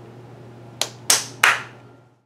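Three sharp knocks in quick succession, starting just under a second in, the last two the loudest: plastic slime cups and sticks being thrown into a plastic kitchen trash can.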